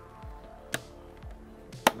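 Faint background music with two sharp clicks from the all-in-one PC's plastic housing being handled: a small one about a second in and a louder one near the end.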